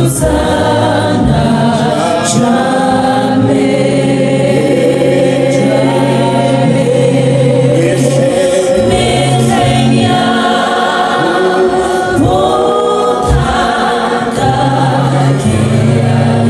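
Gospel worship song sung by a small group of men's and women's voices on microphones, with long held notes over a steady low accompaniment.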